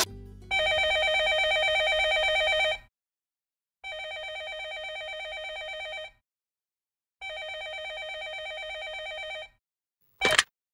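Landline telephone ringing three times with an electronic warbling ring. Each ring lasts a little over two seconds with about a second's gap between rings, and the first ring is louder than the other two.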